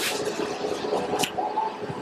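A bite into a ripe cashew apple, then juicy chewing with wet mouth sounds, with a second crisp bite about a second and a quarter in.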